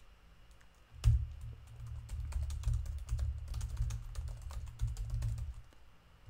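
Typing on a computer keyboard: after about a second of quiet, a run of quick keystrokes lasting about four and a half seconds.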